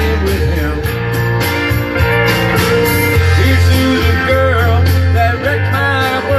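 Country song backing track playing, with guitar over a steady bass line.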